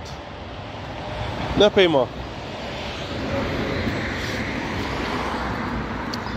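Road traffic: a passing car's tyre and engine noise, building gradually over a couple of seconds and then holding steady.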